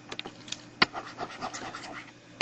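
Stylus clicking and scratching on a tablet screen while pen annotations are erased: a few light clicks, one sharper a little under a second in, over faint scraping.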